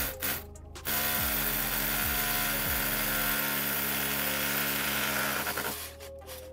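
Cordless hammer drill boring into a brick wall. It starts about a second in, runs steadily for about five seconds and stops just before the end.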